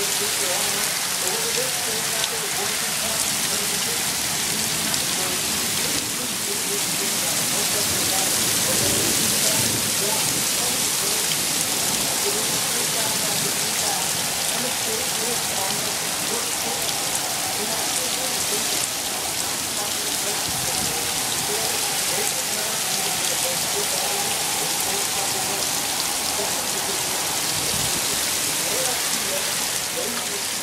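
Heavy rain pouring down steadily, an even, unbroken hiss.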